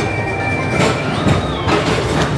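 Ride vehicles on a rail track rattling past, with a few sharp clacks and a brief high squeal in the middle.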